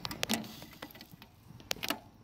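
A metal ladle clinking and tapping against a frying pan and the motorcycle chain steeping in hot oil: about six sharp, irregular clicks.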